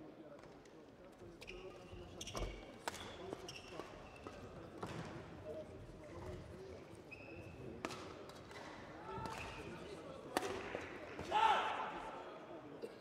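Sports-hall ambience: scattered short squeaks and sharp knocks on the court floor over low, indistinct voices, with a louder burst near the end.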